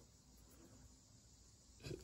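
Near silence: room tone with a faint low hum, and a short faint breath near the end.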